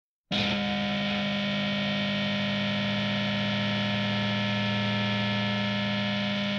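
Distorted electric guitar holding one steady, droning chord that starts abruptly a moment in: the intro of a noise rock track.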